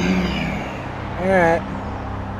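A man's short wordless vocal sound about a second in, over a steady low rumble, with a brief hiss at the very start.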